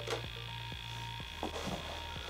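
Faint steady low hum with soft ticks about four a second, and a brief soft sound about a second and a half in.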